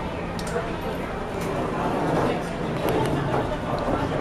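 Indistinct chatter of several people talking at once in a room, with a few light clicks mixed in.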